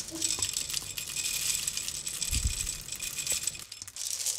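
Whole roasted coffee beans poured into the metal cup of a coffee grinder: a dense, continuous clatter of beans landing, which stops shortly before the end. There is one low thud about halfway through.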